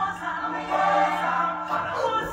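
Recorded choral music: a chorus of voices singing over a held low note.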